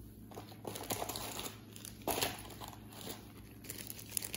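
Clear plastic bags of wax melt bars crinkling as they are handled, in irregular rustles with a louder one about two seconds in.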